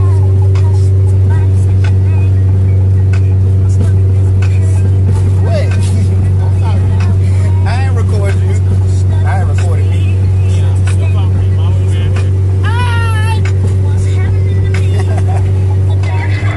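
Steady low drone of a car cabin on the move, unchanging in pitch, with a man's voice breaking in a few times in short rising and falling cries or laughs, the strongest near the end.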